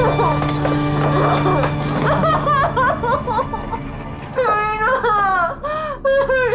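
A steady low film-score drone under a woman's laughter, with muffled, wavering cries through a gag that grow longer and louder in the last couple of seconds.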